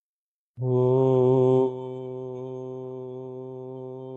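A man chanting a single long Om at one steady low pitch. It starts about half a second in with a loud open 'O' for about a second, then drops to a quieter hummed 'mmm' on the same note, held past the end.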